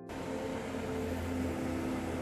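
Steady low engine hum from the Bodinnick car ferry's boat crossing the river, with a few wavering tones over it, heard under an even, constant outdoor rush of noise.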